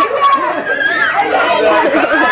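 Many young children's voices chattering and calling out over one another, high-pitched and overlapping without a break.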